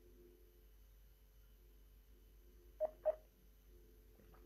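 A telephone line on hold, heard faintly through the phone: low steady tones, then two short beeps close together about three seconds in.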